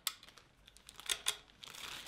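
Clear plastic bag crinkling faintly as it is slid off a rifle, in sparse crisp crackles, with a couple of sharper ones just after a second in.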